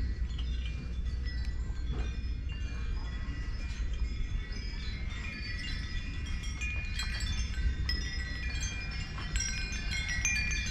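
Many hanging metal wind chimes, tubular chimes and small bell chimes, ringing together in a dense tangle of overlapping high clear notes, over a steady low rumble.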